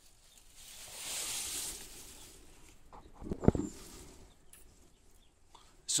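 Pointing tool scraped over fresh cement mortar in a stone-wall joint: a soft scrape lasting about two seconds, then a sharp knock about three and a half seconds in.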